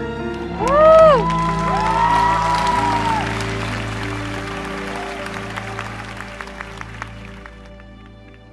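Closing notes of a slow ballad, then audience cheering and applause. A loud rising-and-falling cheer comes about a second in, and the clapping slowly dies away.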